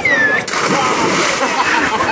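A person jumping feet-first from a rock into the sea: a big splash about half a second in, then the rushing hiss of churned water.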